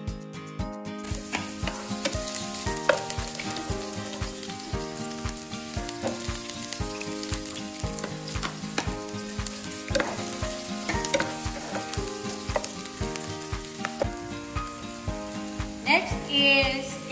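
Garlic and sliced onion sizzling in hot oil in a frying pan, the hiss rising about a second in as the onions go in. Background music with a steady beat plays underneath.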